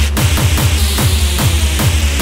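Jumpstyle electronic dance music from a DJ mix: a fast, pounding kick drum, about three beats a second, each beat dropping in pitch, over heavy bass.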